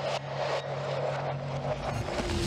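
A low, sustained suspense drone from the horror score's sound design, with two sharp hits near the start.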